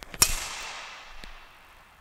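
A badminton racket swung hard through the air in a shadow forehand clear, giving one sharp swish close to the microphone and a hiss that fades away over about a second.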